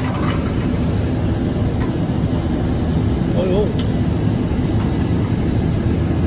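ZXJ-919-A fiber stuffing machine running, tumbling and blowing fiber filling in its mixing chamber: a steady, loud, low machine noise.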